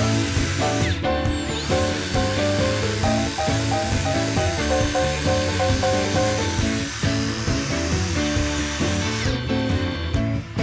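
Background music over a Makita cordless narrow-belt sander running against carved wood, which stops about a second before the end.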